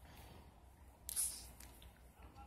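Sears Roebuck/Emerson 1895 Series ceiling fan running with a faint, steady low hum. A brief, sharp rustle cuts in about a second in.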